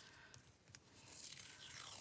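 Washi tape being peeled off its roll: a few faint clicks, then from about halfway a tearing hiss that grows louder as the strip is pulled out.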